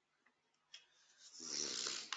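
A short click, then a loud breath close to the microphone that swells over the last second.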